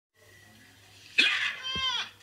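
A cartoon character's high-pitched voice: a sudden loud burst a little after a second in, then a short squeal that falls in pitch.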